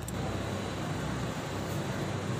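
Steady low background noise with no speech, and a faint click right at the start.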